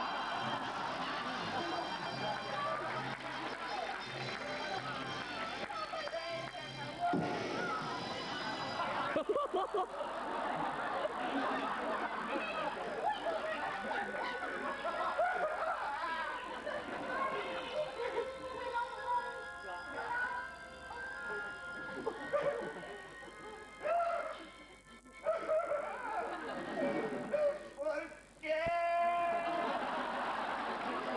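Live music from a stage performance, with a voice over it and some held instrument notes. The sound drops away briefly a few times near the end.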